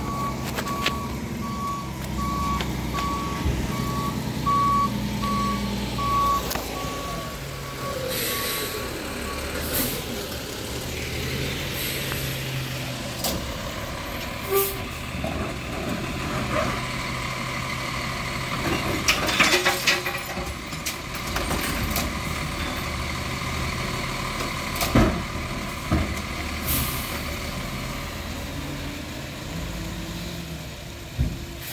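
Diesel garbage truck, an automated side-loader, running with its reversing alarm beeping steadily for the first nine seconds or so. Later come scattered clanks and bangs as the truck handles recycling carts at the curb.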